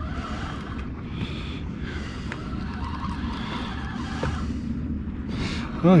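Steady low rumble with soft, uneven washes of hiss: wind and water around an open fishing boat.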